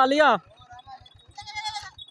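A young goat bleats once, a short high-pitched call about a second and a half in.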